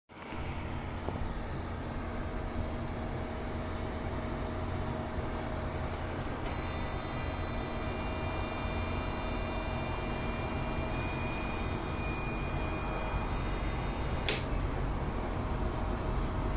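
Steady low rumble of a passenger train rolling slowly, heard from inside a coach. Partway through comes a high, ringing multi-tone squeal lasting about eight seconds, which changes pitch midway and ends with a sharp click.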